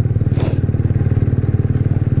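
Kawasaki W175 SE's air-cooled single-cylinder engine running steadily at cruise, heard from the rider's seat. There is a brief hiss about half a second in.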